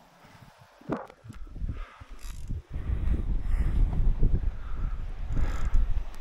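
Riding noise from a bicycle on an asphalt road: a sharp mechanical click about a second in, then a low rumble building from about three seconds in.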